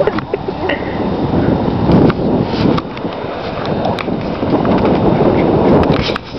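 Wind buffeting the camera's microphone: a loud, uneven rumble.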